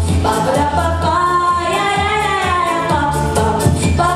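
A girl singing into a microphone over a recorded pop backing track with a steady drum beat and bass line, with a long, wavering held note near the middle.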